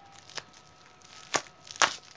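Scissors snipping at plastic bubble wrap: three short sharp clicks with faint crackle between them, the loudest near the end.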